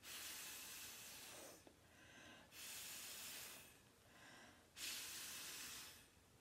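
Breath blown through a drinking straw onto wet acrylic pour paint, pushing the paint across the canvas: three long blows of just over a second each, with quieter in-breaths between.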